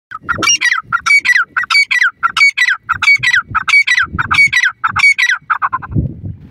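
Grey francolin (teetar) calling: a loud, rapid series of high-pitched repeated phrases, about nine of them at an even pace, that stops just before the end.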